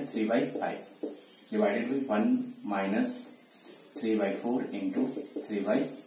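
A man speaking Hindi while working a maths problem, over a steady high-pitched trill of crickets.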